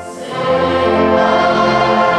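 Parish brass band with tuba and trumpets playing a Christmas carol. There is a short lull between phrases at the start, then held chords.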